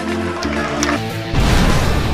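Electronic background music with steady bass notes; about one and a half seconds in, a loud crashing impact sound effect with a deep low rumble sets in as a transition stinger.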